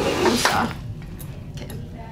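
Hands rummaging in a fabric backpack's front pocket: a burst of rustling in the first half second, then fainter rustles and a few small clicks as an item is pulled out.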